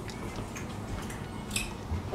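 Fingers picking at a small plastic soy sauce packet to tear it open: faint crinkles and a few light clicks, with a sharper crinkle about one and a half seconds in.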